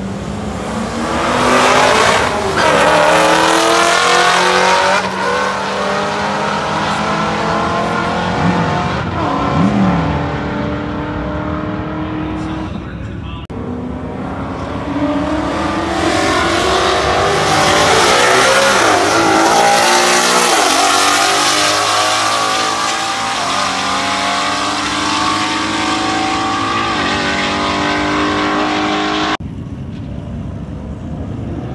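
Street cars accelerating hard down a drag strip in roll races, their engine notes climbing in pitch again and again as they pull through the gears. The sound drops out briefly about halfway, then comes back with another pass and cuts off suddenly near the end.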